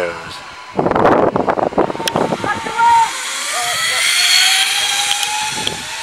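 Zip-line trolley pulleys running along the steel cable as a rider goes down. The whirring hiss builds to a peak around four seconds in and then fades, and just before it comes a short burst of shouting.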